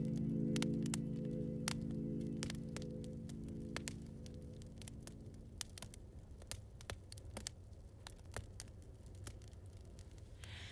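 A wood fire crackles with irregular sharp pops over a steady low hum. The last sustained chord of a song fades out over the first five or six seconds.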